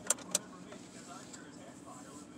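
Two sharp clicks in quick succession near the start, over a steady low hum and faint, muffled voices.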